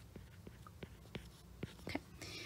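A stylus tapping on an iPad's glass screen while handwriting: about half a dozen faint, sharp ticks over a low hiss.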